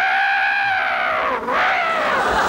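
A man imitating an elephant's trumpet with his voice: one long, high, wavering call, then a second one starting near the end.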